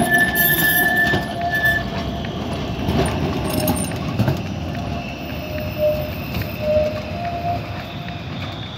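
An articulated tram running through a curve, its wheels squealing on the rails over the low rumble of the running gear. A high squeal is held through the first two seconds; lower squeal tones then come and go near the end.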